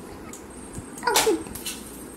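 A short, high-pitched whine from an animal, rising and falling, a little after a second in, over a steady faint background hiss.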